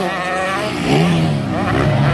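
Motocross bike engines revving up and easing off, with the pitch rising and falling. The nearest is a KTM 125 SX two-stroke.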